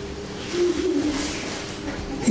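A pigeon cooing: one short, wavering, low coo about half a second in.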